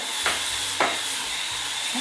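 Electric spin scrub brush with a round bristle head scrubbing shower floor tile: the motor whirs with a steady high whine while the bristles rasp over the tile, with a couple of brief knocks.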